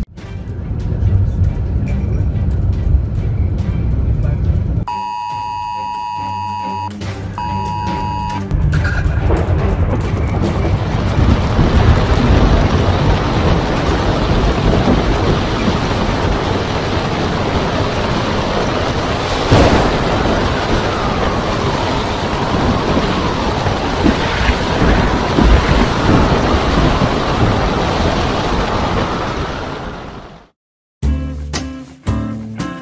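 Steady rush of heavy rain and traffic on a flooded road, heard from inside a car. Before it, a low rumble, then two held electronic beeps about five to eight seconds in.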